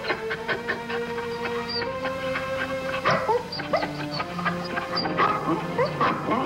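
Background music score with long held notes, with dogs yipping and whining over it in short rising cries.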